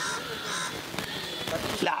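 A bird cawing over low background voices, with a sharp click about a second in; a man starts speaking loudly near the end.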